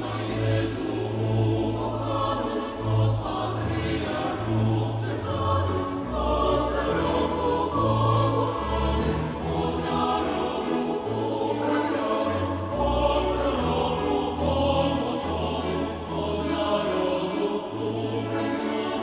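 Mixed choir singing a traditional Polish Christmas carol, accompanied by a chamber string orchestra with sustained low bass notes.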